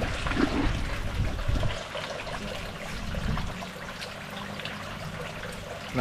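Water at the surface of a tilapia pond as the fish feed: busy splashing in the first couple of seconds, then a steady trickle of flowing water with a faint low hum.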